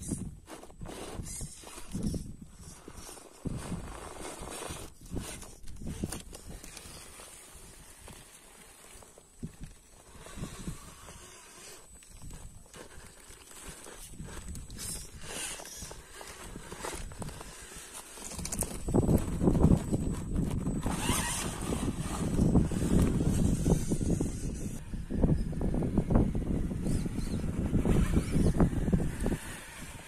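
Axial Capra 1.9 radio-controlled rock crawler working over granite: irregular knocks, clicks and scrapes of its tyres and chassis on the rock. About two-thirds of the way in, a louder, steadier low rumble comes in and carries on to near the end.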